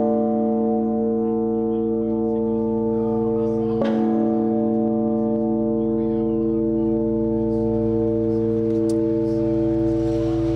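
The World Peace Bell, a huge swinging bell, ringing: its clapper strikes once about four seconds in, and the bell's deep, many-toned hum carries on steadily between strikes.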